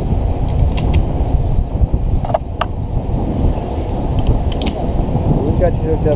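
Wind buffeting the microphone as a loud, steady low rumble, with a few sharp metallic clicks from carabiners and rappel hardware being clipped onto the rope: one about a second in, two close together midway, and a quick cluster near the end.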